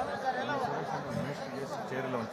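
Chatter of many people talking at once at a low level: a murmur of overlapping voices with no one voice standing out.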